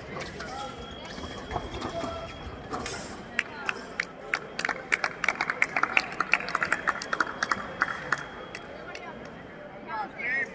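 Sounds of a sabre fencing bout in a large hall: a quick run of sharp clicks and taps starting about three seconds in and stopping about a second and a half before the end, over faint voices.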